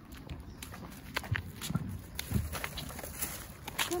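Footsteps on asphalt at a slow walking pace: a string of light scuffs and clicks from shoes on the pavement.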